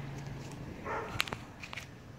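Puppy's claws ticking on concrete as it walks: a few light, sharp clicks a little over a second in, then fainter ticks, with a brief soft noise just before the clicks.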